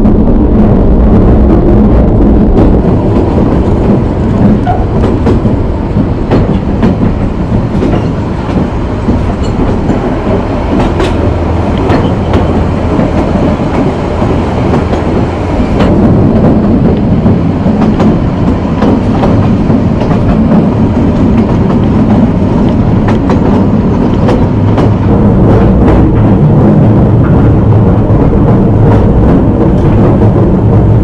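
Narrow-gauge heritage train carriage running along the track, heard from inside: a loud, steady rumble of wheels on rail with frequent irregular clicks and rattles from the wooden carriage.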